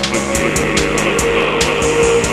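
Minimal-wave electronic music on analog synthesizers: steady sustained synth tones over a ticking beat of about four ticks a second. About a quarter second in, a hissing noise-like synth layer swells up under the beat.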